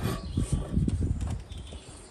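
A few light, irregular knocks and handling sounds from the metal frame of a lighthouse lens panel being moved and fitted on its stand, over a low rumble.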